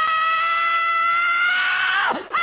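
One long, high-pitched scream held without a break, its pitch creeping slowly upward and dropping away right at the end.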